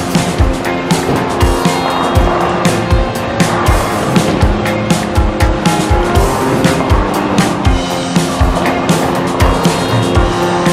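Background music with a steady, driving beat, about two beats a second.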